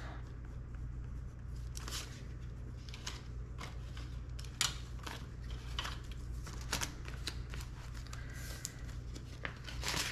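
Paper banknotes and clear plastic binder envelopes being handled: scattered rustling and crinkling with sharp little clicks over a steady low hum.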